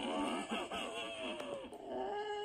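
A person's wordless vocal sound, its pitch sliding up and down, fading out near the end.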